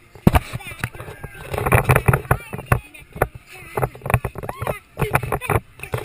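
A child's voice chattering close to the microphone, mixed with frequent knocks and rustles from a handheld camera being handled.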